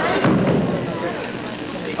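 Indistinct men's voices talking, loudest just at the start and trailing off into a lower murmur.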